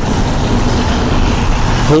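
Steady rushing noise of road traffic, a motor vehicle going by close at hand.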